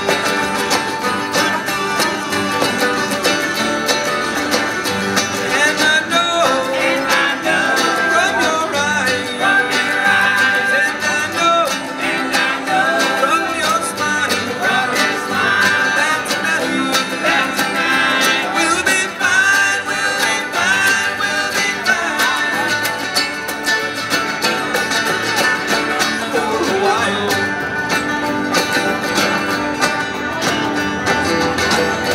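Acoustic string band playing live in a bluegrass style: strummed acoustic guitars and a picked banjo, with voices singing through most of the middle of the passage.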